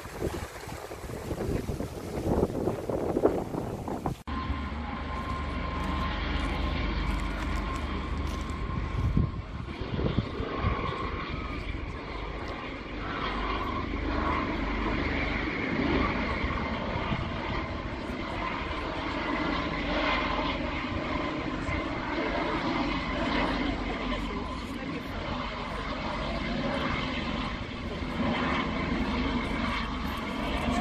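A shallow stream running over rocks for the first few seconds, then, after a cut, a helicopter flying past with a steady low drone of rotor and engine that carries on to the end.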